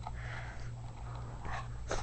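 Chihuahua puppy eating wet food from a dish: soft, quiet mouth noises of lapping and chewing, a longer stretch at first and a short one near the end.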